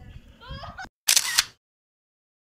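Faint voices in the background, then about a second in a loud, half-second burst of hissing noise that cuts off abruptly into dead silence.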